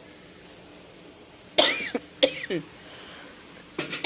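A woman coughing, two short coughs about a second and a half in and again just after, with another beginning near the end. The coughing comes from a sore throat that she says is still bothering her.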